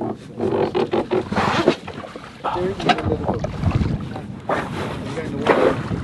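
Wind buffeting the microphone on an open skiff, with knocks and handling noises and short bits of muffled, indistinct talk.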